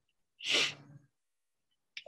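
A man's single short, breathy exhale about half a second in, lasting about half a second.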